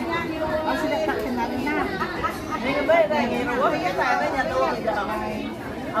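Several women's voices talking over one another in casual group chatter.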